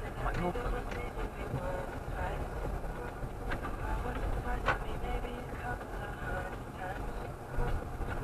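Car cabin noise while driving: a steady low engine and road rumble, with a single sharp click about halfway through.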